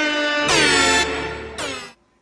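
Air horn sound effect blasting three times in a row, the middle blast the longest and loudest and the last one short, cutting off suddenly.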